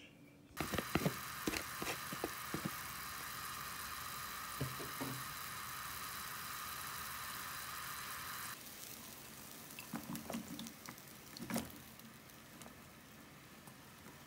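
Kitchen cooking sounds: a steady sizzling hiss with scattered utensil clicks, which cuts off abruptly about eight seconds in. Then comes quieter sound from a pan of sliced beef simmering in water, with a few light clinks.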